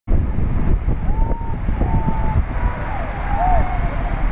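Wind buffeting the microphone and road noise from a moving car, a heavy fluttering rumble. Faint high wavering calls come and go over it.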